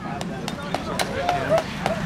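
Sharp hand claps, about three a second, with faint voices in the background.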